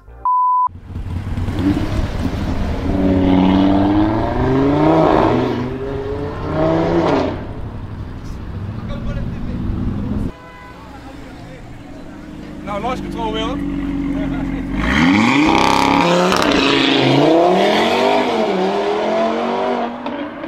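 A short beep, then car engines revving hard with echo in a tunnel, the pitch climbing in repeated pulls. The sound drops back at about ten seconds and picks up again with a loud pull at about fifteen seconds.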